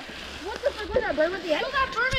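Indistinct talking over a steady rustle of mountain bike tyres rolling through dry fallen leaves.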